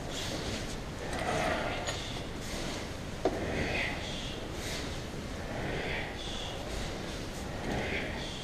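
A group practising bokken (wooden sword) swings together: repeated short swishes and rustles of swords, uniforms and feet on the mats, roughly one a second, with one sharp click about three seconds in.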